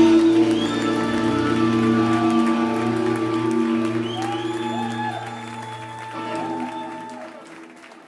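A live rock band's final chord rings out on electric guitars and bass, held and slowly fading away, with the bass stopping near the end. Rising and falling shouts from the audience come over it, and scattered applause starts as the chord dies.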